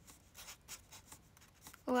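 A permanent marker (a Sakura 'My Name' pen) writing: a run of short, scratchy strokes, about four or five a second, as characters are written out.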